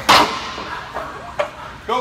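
Steel weight plates on a plate-loaded leg press clank sharply just after the start, ringing briefly, as a plate is stripped off the weight horn for the drop set; a smaller knock follows about a second and a half in.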